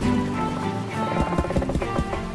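Online video slot game audio: looping game music with reel-spin sound effects, and a quick run of knocks in the second half as the reels stop.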